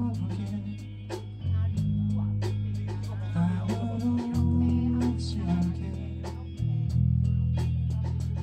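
Rock band playing live: electric bass holding long low notes that change every second or two, with electric guitar and regular drum hits.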